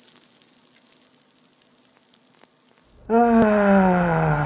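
Faint crackling hiss, then about three seconds in a man's voice breaks in loudly with a long, drawn-out exclamation that slides steadily down in pitch.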